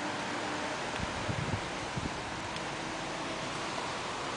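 Steady outdoor background hiss, with a few soft low bumps between one and two seconds in.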